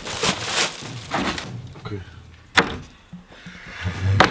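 A closet door pulled shut, landing with one sharp knock about two and a half seconds in, with shuffling movement and a short spoken word around it.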